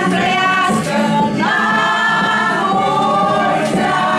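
Several voices singing a song together in a group toast, with held notes and pitch glides, continuous throughout.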